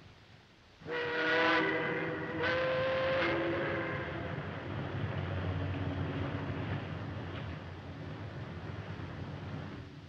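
Ship's steam whistle sounding in two blasts, the first about a second in and the second a moment later, each a chord of several tones. After them a steady background noise carries on and slowly fades.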